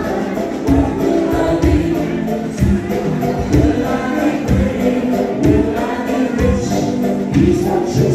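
Live band playing an upbeat party song with a steady beat, with many voices singing together.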